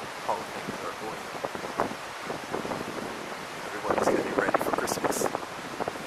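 Wind on the microphone over a steady outdoor hiss, with a person's indistinct voice, loudest about four to five seconds in.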